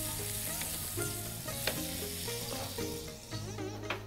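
Butter sizzling as it melts on a hot ridged grill pan while it is spread with a silicone spatula. The sizzle fades near the end.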